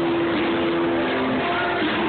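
Live rock band music played loud, recorded from inside the crowd on a phone's microphone, sounding dense and dull at the top. A held note runs through most of the first second and a half.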